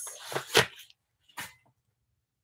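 A quilted zip-around wallet being opened and handled: a short rasp and rustle of its paper stuffing, then two brief taps about a second apart.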